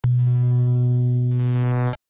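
Electronic intro sting: one held, low synthesizer tone that starts suddenly, grows brighter about two-thirds of the way through and cuts off abruptly.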